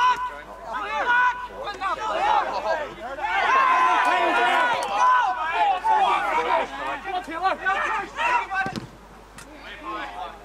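Footballers shouting and calling to each other during open play, several men's voices loud and overlapping, busiest in the middle. The shouting drops away near the end, leaving a couple of short knocks.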